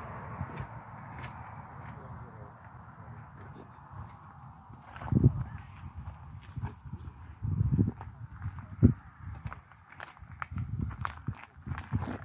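Footsteps on a grassy gravel path, with small scattered clicks and a few louder low thumps about five, eight and eleven seconds in.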